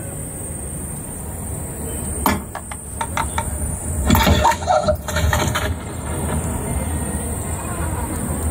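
Crowded hall with a steady low rumble from loudspeakers playing a video ad, a few sharp clicks from about two seconds in, and brief murmuring voices around the middle.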